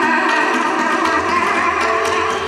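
Hindustani classical music: sustained melodic notes held over a steady drone, with tabla accompaniment.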